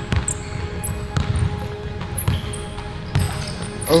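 A basketball being dribbled on an indoor gym court: repeated low bounces, with a few sharp clicks and short high squeaks from the players' sneakers on the floor.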